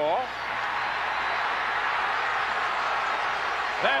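Steady noise of a large stadium crowd, an even wash of many voices that holds level after a commentator's word at the start until another commentator speaks at the end.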